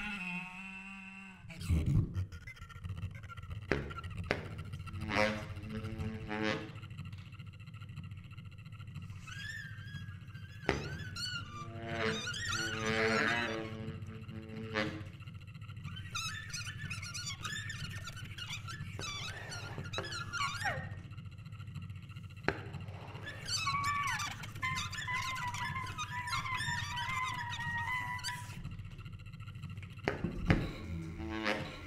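Free improvisation for daxophone and baritone saxophone. The bowed wooden tongue of the daxophone gives voice-like, animal-like squeaks and sliding pitches, bent by the wooden dax. Under it runs a steady low drone, with knocks scattered through.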